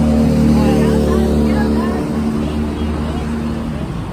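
The engine of a large road vehicle, likely a bus, running close by with a steady low hum made of several pitched tones. The hum drops away near the end.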